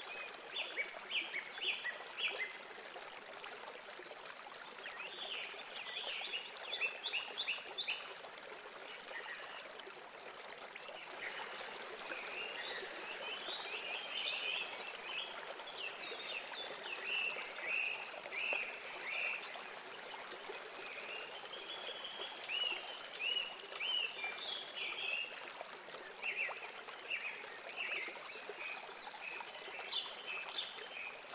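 House sparrows chirping in clusters of short, repeated chirps, a few at first and then almost without a break through the second half, over a steady background hiss.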